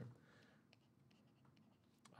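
Near silence, with a few faint ticks of a stylus tapping and sliding on a tablet screen as a word is handwritten.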